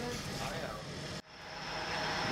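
Faint speech, cut off sharply about a second in, then steady bakery machinery noise, a hum with a thin high whine that grows louder.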